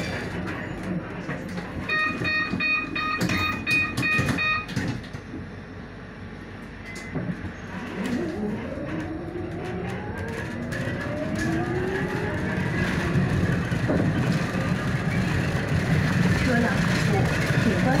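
City bus at a stop: a run of short electronic beeps about two seconds in, then the electric drive motor's whine rising in pitch as the bus pulls away and gathers speed. Road noise grows louder toward the end.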